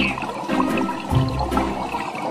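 Rushing, bubbling water like an underwater scene, with background music under it.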